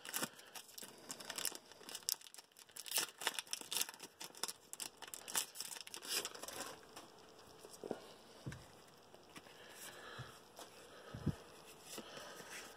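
Foil-lined wrapper of a Pokémon card pack being torn open and crinkled by hand, a quick run of crackles for the first six seconds or so. It then goes quieter as the cards are slid out and handled, with a few soft knocks.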